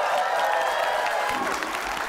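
Studio audience applauding, with a long held cheer over the clapping that fades about a second and a half in.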